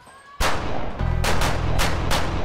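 A volley of gunshots: one loud shot about half a second in, then three more in quick succession, with a low music bed coming in underneath about a second in.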